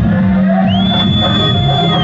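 Live band playing Himachali Nati folk music through loudspeakers at a stage show. A long, high-pitched whistle comes in under a second in and holds steady over the music.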